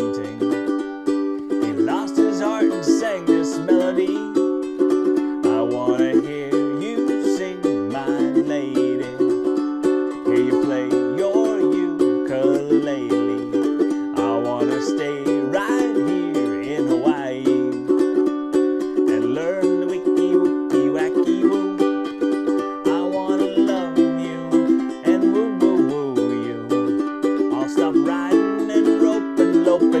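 Ukulele strummed in steady chords through an instrumental break, with a man's voice carrying a low stepped melody along with it without clear words.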